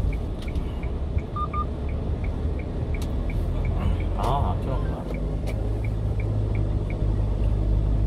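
Cab of a 1-ton delivery truck on the move: steady low engine and road rumble, with a turn-signal indicator ticking about three times a second through the first half and again for a while later. A short double beep sounds about a second and a half in.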